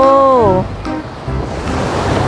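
Sea surf washing on a sandy beach, with wind rumbling on the microphone. A drawn-out, sing-song voice falls away about half a second in.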